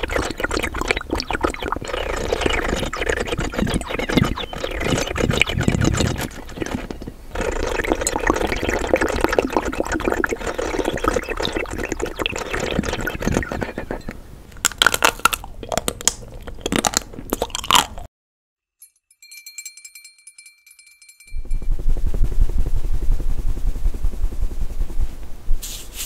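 Water-filled bird whistle glasses being blown, a bubbling, warbling chirp that imitates birdsong. It is followed by a few short bursts, a pause of about three seconds, and a different noisy sound near the end.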